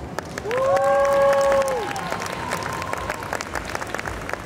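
Audience applauding, with a few voices holding long cheering calls over the first two seconds.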